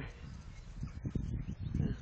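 Wind rumbling and buffeting on the microphone of a handheld camera outdoors, with faint background sounds.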